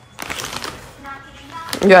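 Crinkly rustling of a foil-lined popcorn bag as a hand reaches in for a piece, a burst of crackles in the first second.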